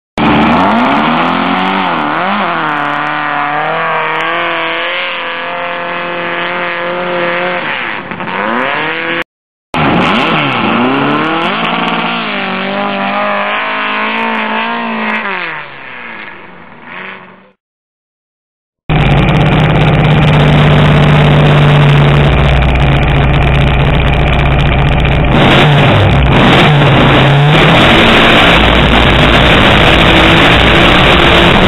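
Sand rail dune buggy engines at a hillclimb. An engine revs up and down in sharp swells, and after a brief cut a second run fades away as the buggy climbs. After a short gap comes loud, steady engine noise recorded on board the buggy at full throttle.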